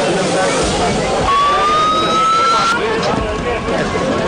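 Ambulance siren giving a single slowly rising tone for about a second and a half, then cutting off suddenly, over people's voices.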